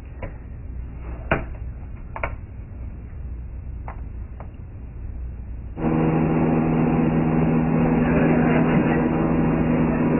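A few soft clicks over quiet room hum. About six seconds in, the loud, steady drone of a light aircraft's engine and propeller cuts in, heard from inside the cockpit as the plane rolls for takeoff. The drone carries several steady tones.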